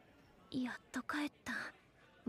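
Quiet speech: a woman's voice saying a few short phrases in Japanese.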